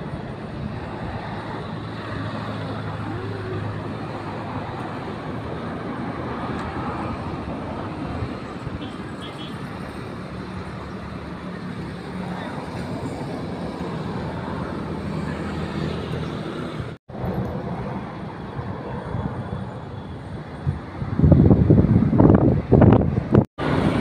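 Steady outdoor road-traffic noise with a low engine hum underneath. Louder voices come in about three seconds before the end.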